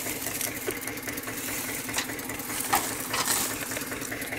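Tractor engine idling steadily, with a few sharp knocks of sugarcane stalks as cane is loaded onto the trolley.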